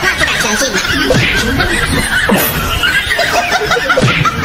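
People laughing and snickering, with no clear words.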